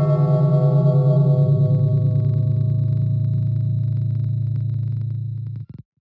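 A low, gong-like ringing sound effect with a slow wavering wobble, fading gradually and cutting off shortly before the end.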